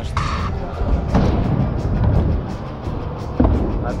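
Background music over the low rumble of a stunt scooter's wheels rolling across plywood ramps, with a single sharp knock about three and a half seconds in.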